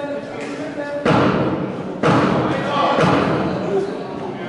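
Boxing blows landing: three heavy thuds about a second apart, each with a loud burst of noise that rings out in the large hall, over background voices.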